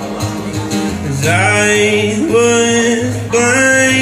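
Acoustic guitar being played live, with a man's voice singing over it from about a second in.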